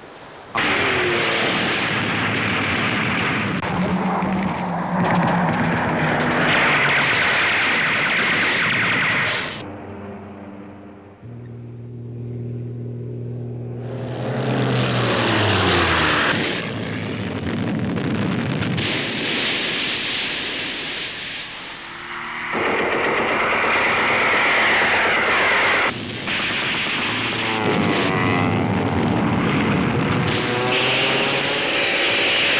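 Air-raid soundtrack: propeller warplane engines droning, with repeated falling-pitch passes as the planes dive. Heavy gunfire and explosions run through it, with a quieter steady engine drone for a few seconds in the middle.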